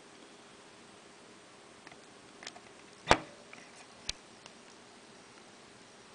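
A few faint clicks and one sharp knock about three seconds in, then a lighter knock a second later, over quiet room tone: handling noise while the silicone is poured and the handheld camera is moved.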